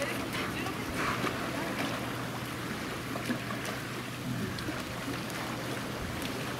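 Water lapping and sloshing in an outdoor dolphin pool under a steady low hum, with faint distant voices now and then.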